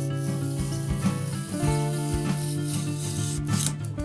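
Background music with sustained notes, over a rasping hiss of clear adhesive tape being handled and rubbed onto Depron foam by hand; the hiss stops abruptly shortly before the end.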